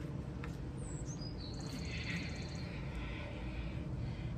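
A bird singing: a high, falling whistle about a second in, followed by a fast, high trill lasting about a second.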